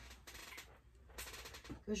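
Faint rustling and small clicks of small craft scissors being put back into a pencil case among craft supplies, in two short spells.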